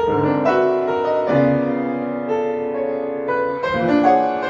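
A 1980 Feurich upright piano played solo: slow, sustained chords left ringing, with a new chord struck about a second in and another near the end.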